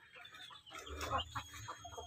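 A few faint, short clucks from Pelung breeding hens.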